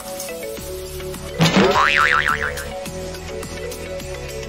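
Background music with a cartoon 'boing' sound effect about a second and a half in: a rising sweep that turns into a wobbling tone for about a second.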